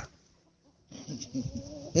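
Near silence for about a second, then faint, wavering animal calls in the background.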